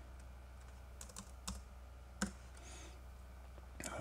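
Computer keyboard keys tapped a few separate times: a couple of keystrokes about a second in, another at a second and a half, and the sharpest just after two seconds, as a short search term is typed.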